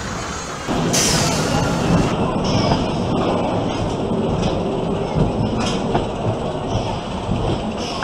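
Wild mouse roller coaster car rolling and rattling along its steel track, heard from on board. It starts abruptly about a second in, after a moment of quieter park background.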